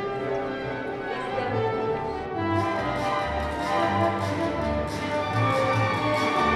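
Orchestral music with bowed strings; from about three seconds in, a bass line joins in repeated short notes.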